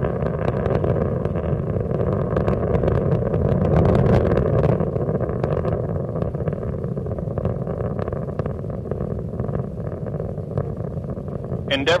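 Space Shuttle Endeavour's solid rocket boosters and three main engines during ascent, a steady rumble with continual crackle. The main engines are throttled back to about 72% while the shuttle passes through the sound barrier.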